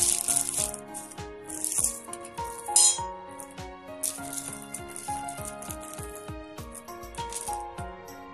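Background music with a steady melody, over the crackle of a thin plastic bag being torn open and small metal screws clinking and rattling. The crackle is loudest in the first three seconds, with a sharp peak near the middle, and scattered light clicks follow.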